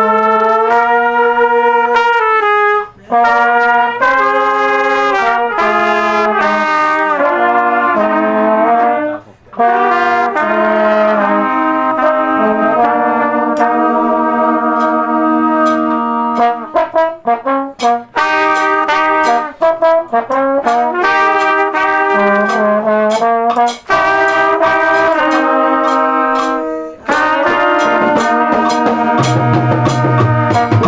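Trumpets and a trombone playing a tune together in harmony, in long held phrases with brief breaths between them and a stretch of short, detached notes around the middle. Deep bass notes come in at the very end.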